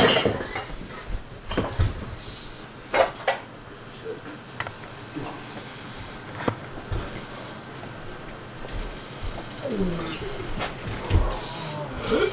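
Scattered knocks, thumps and light clinks of people and objects being moved about, with a short voice sound about ten seconds in.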